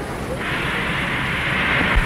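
Steady hiss of helium gas flowing from banks of cylinders through hoses to inflate a stratosphere balloon, starting about half a second in, over a low rumble.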